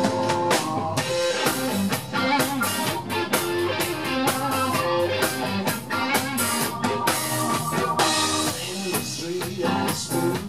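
Blues-rock band playing live: a Stratocaster-type electric guitar over a rock drum kit, with held Hammond organ chords.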